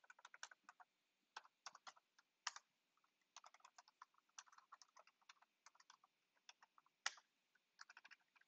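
Typing on a computer keyboard: a run of quick, irregular keystrokes, with two louder key presses, one about two and a half seconds in and one near the end.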